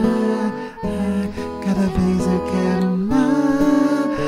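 Acoustic guitar played as a bossa nova accompaniment, with a voice singing the melody over it without clear words.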